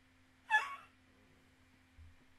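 A woman's short, high-pitched squeal about half a second in, falling slightly in pitch.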